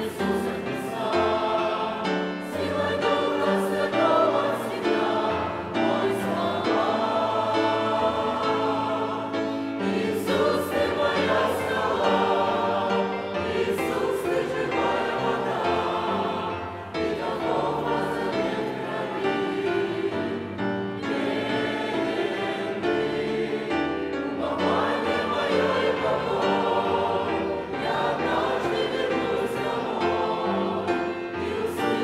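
A choir singing a hymn in Russian, many voices in sustained harmony.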